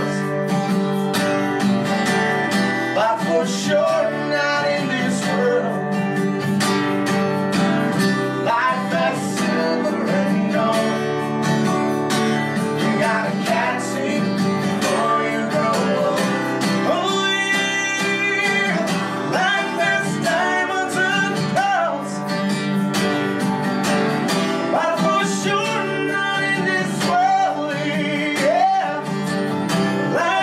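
A steel-string acoustic guitar strummed while a man sings, played live in a small room. A small hand shaker keeps time with quick ticks.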